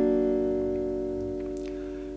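A chord on a steel-string acoustic guitar, struck once just before, ringing on and slowly fading. It is the chord shape with the third raised from minor to major by moving the index finger up one fret.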